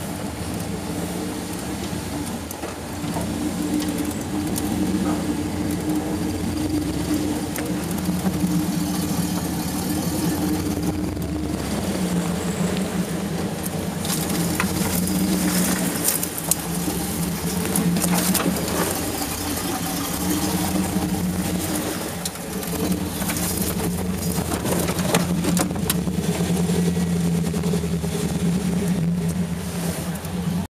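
Off-road vehicle's engine running at low revs under load while rock crawling, heard from inside the cab; the note swells and eases several times as it works over the rocks, with a few sharp knocks.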